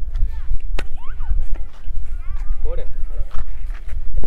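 Men's voices talking close by, half-heard, over a steady low rumble of wind on the microphone, with a few sharp clicks in between.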